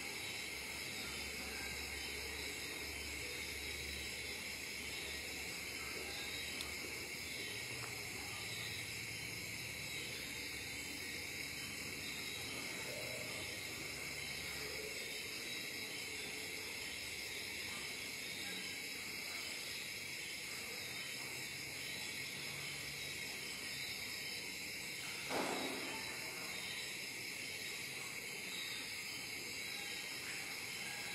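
Steady background hiss, with a faint low hum in the first few seconds and one brief, short sound about 25 seconds in.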